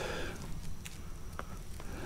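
Faint footsteps of a hiker walking on a dirt forest trail, a few soft scattered clicks over a steady low rumble on the camera microphone.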